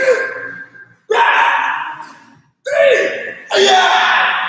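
Taekwondo kihap shouts from the students as they kick: four short, loud shouts about a second apart, each trailing off over about a second.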